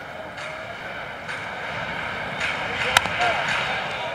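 A softball bat striking the ball once, a single sharp crack about three seconds in, over steady background crowd noise.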